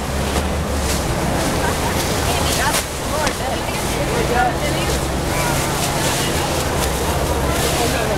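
Large plastic bags rustling as they are shaken open and filled with air, with wind on the microphone and people talking around them.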